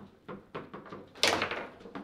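Table football game: the ball knocks lightly against the players' plastic figures, then one loud, sharp bang a little past a second in.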